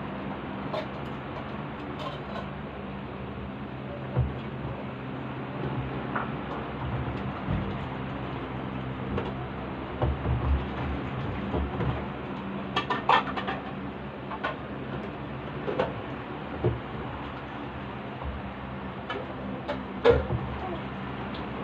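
Dishes and kitchenware being handled at a sink, with scattered soft knocks and light clinks, a short cluster of clinks about two-thirds of the way through, over a steady low hum.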